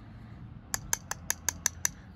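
A wooden fingerboard deck being tapped: seven quick, sharp taps in a row, about six a second, starting about a second in.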